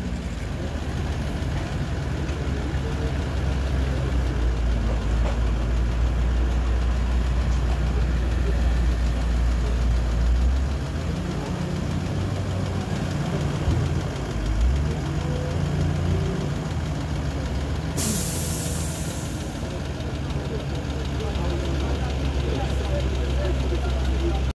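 A motor vehicle engine running nearby, a steady low rumble throughout, with a brief hiss about three-quarters of the way through.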